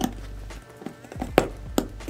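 Background music: a steady low bass line with sharp percussive hits, the loudest near the end.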